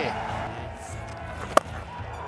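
A single sharp crack of a cricket bat striking the ball about a second and a half in, over background music.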